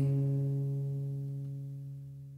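The last chord of an acoustic guitar ringing out and fading away steadily at the close of a song.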